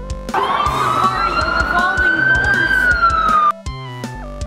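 One long, loud, high-pitched scream that rises slowly in pitch and falls near its end, then cuts off abruptly.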